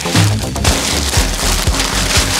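Goldfish crackers and chocolate-covered peanuts rattling and rustling in a plastic zip-top bag as it is shaken, over background music.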